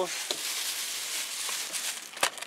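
Thin plastic grocery bag rustling and crinkling steadily as a hand rummages in it for canned food.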